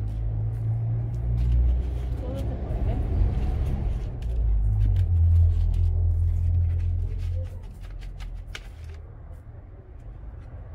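Low engine rumble of a motor vehicle, swelling through the middle and fading over the last couple of seconds, with a few faint clicks near the end.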